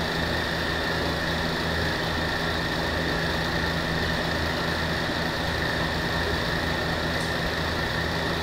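A steady mechanical hum with a faint high whine above it, unchanging throughout.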